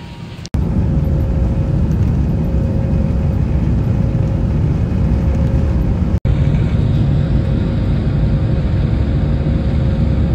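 Airliner's jet engines at takeoff power, heard inside the cabin: a loud, steady rumble with a faint, thin steady whine. It starts abruptly about half a second in and drops out for an instant about six seconds in.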